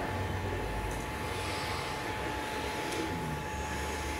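Room tone: a steady low hum with a faint, thin high whine over it.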